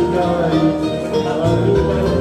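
A Bengali song: a man singing into a microphone over a guitar-led backing track, amplified through PA speakers.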